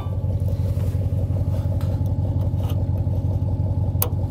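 Vehicle engine idling steadily, with a low, even rhythmic hum. Two faint metallic clicks come about two seconds in, as the steel clevis pin is dropped through the drawbar and its clip is fitted.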